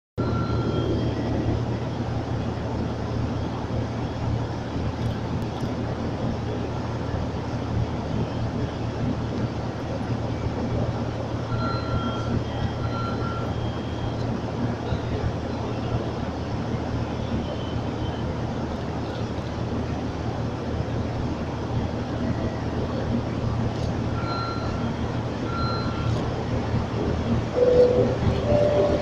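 Steady low diesel rumble of trains idling under a station roof, broken by a few short, high-pitched beeps, twice in quick pairs. Near the end the sound swells as a diesel locomotive pulls in.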